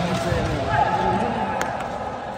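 Spectators' voices talking and calling in an indoor sports hall, with one sharp knock about one and a half seconds in.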